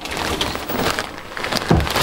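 Wooden under-bed storage drawer being handled on its runners: a scraping, clicking rattle, ending in a low thump near the end.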